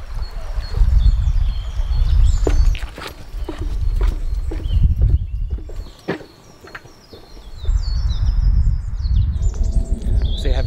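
Songbirds chirping against a fluctuating low rumble of wind on the microphone, with footsteps on a paved path, about two a second, in the middle.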